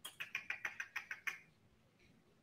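Light, quick clicking, about seven clicks a second for a second and a half, from working a computer while searching back through text messages.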